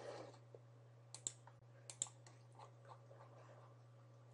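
Near silence: room tone with a steady low hum and a few faint clicks, about a second in and again about two seconds in.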